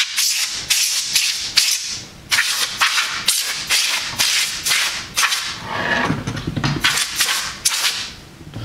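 Canned compressed air (air duster) sprayed through a straw in a quick series of short, sharp hissing blasts, about two a second, with a brief pause about two seconds in.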